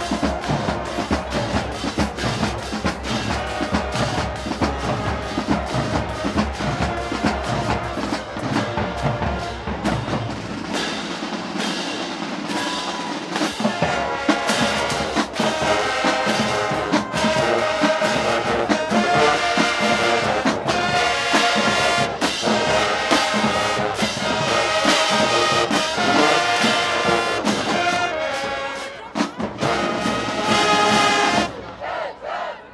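High school marching band playing: the drumline carries the beat at first, then about halfway through the brass section comes in with loud, punchy chords over the drums.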